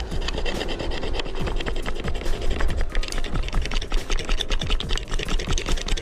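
A metal hand tool rasping and scraping on a bicycle cable in quick repeated strokes, about three a second.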